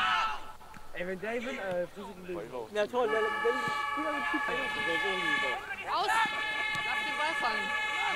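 A loud horn sounding a steady chord of several tones, starting about three seconds in, breaking off briefly near six seconds and then held again, over people's voices.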